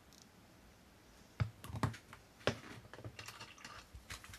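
Hard plastic clicks and knocks of Citadel paint pots and a mounted miniature being handled and set down on a cutting mat: three sharp clicks about a second and a half in, then a run of smaller, quicker clicks.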